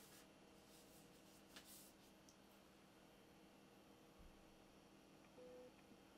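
Near silence: room tone with a faint steady hum, and a faint brief rustle about one and a half seconds in.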